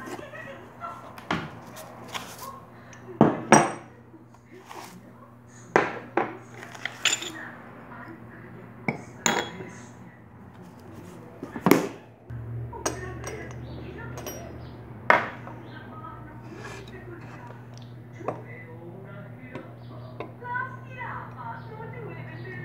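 Dishes and glass saucers being handled and set down: about a dozen separate clinks and knocks a second or more apart. A low steady hum comes in about halfway through.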